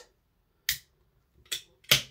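Aluminium beer can being cracked open by its ring-pull: three short sharp clicks and hisses, the loudest just before the end.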